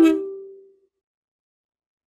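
Ukulele barred C chord strummed with the thumb across the C, E and A strings, ringing and fading out within about a second, one note lingering longest.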